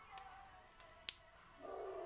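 A single sharp click about a second in: small glass nail polish bottles knocking together as they are gathered up in one hand.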